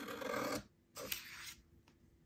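Scissors cutting through a sheet of printer paper, two long cuts of about half a second each.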